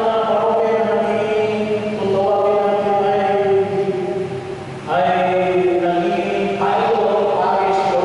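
A man's voice singing or chanting into a microphone, holding long notes and moving to a new pitch about every two seconds.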